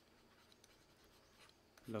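A stylus writing a word by hand on a digital pen tablet: faint, scattered ticks and scratches of the pen tip.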